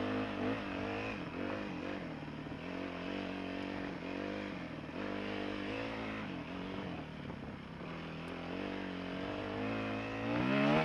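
Dirt bike engine being ridden over rough ground, its pitch rising and falling every second or two as the throttle is opened and closed.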